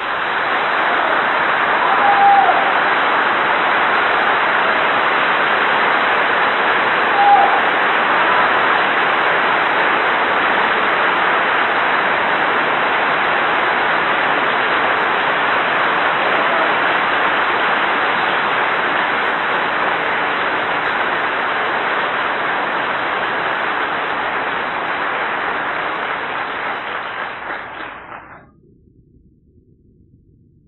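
Theatre audience applauding steadily at the end of an opera aria, with two brief shouts about two and seven seconds in. The applause cuts off abruptly near the end.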